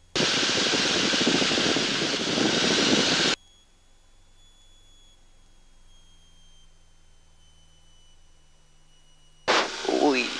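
Rushing noise through a headset boom microphone on the intercom of a light aerobatic aircraft, cut off abruptly after about three seconds, leaving a faint steady hum. A short voice sound comes in near the end.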